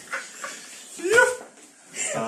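People laughing hard: a few short breathy bursts of laughter, then one loud, high, pitched laughing cry about a second in.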